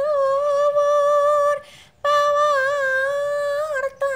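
A woman's singing voice in a Javanese song holds two long, steady notes with a slight waver, with a short break between them about halfway through and little or no accompaniment.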